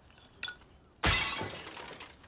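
A drinking glass smashes about a second in, a sudden loud crash of breaking glass that rings and fades out over the next second. It follows a couple of small clicks.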